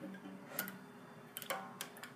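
A few faint, scattered clicks and taps of a pencil and rubber band being handled on a guitar's fretboard and strings while a makeshift capo is fitted.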